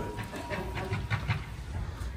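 A glass door being pushed open by its metal push bar, with low rumbling and knocks of handling and steps, and a faint steady high tone that stops about a second in.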